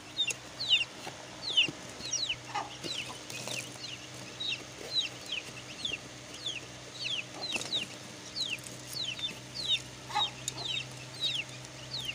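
Aseel chicks peeping steadily, a run of short high calls that slide downward, about two or three a second, with now and then a lower call among them.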